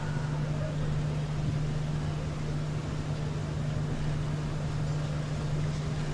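Steady outdoor ambience: a constant low hum over an even rushing noise, with no distinct blows or shouts standing out.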